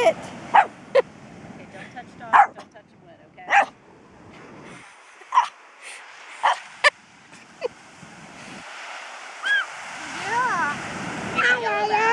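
A puppy barking in short, sharp yaps at a piece of driftwood it is wary of, about eight yaps spaced over several seconds, then a few high whines near the end.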